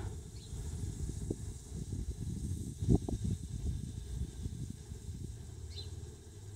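Low, uneven rumble on the microphone, with one brief louder bump about three seconds in.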